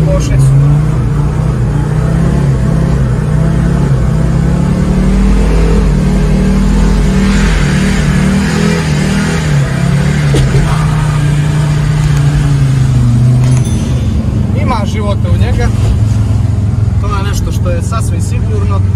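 Old Mercedes-Benz sedan engine held at full throttle during a burnout, the driven wheels spinning after the clutch is dropped. The revs stay high and steady, then drop about three-quarters of the way through. Voices are heard near the end.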